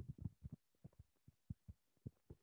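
Near silence with faint, irregular low taps, several a second: a stylus knocking on a tablet screen while writing by hand.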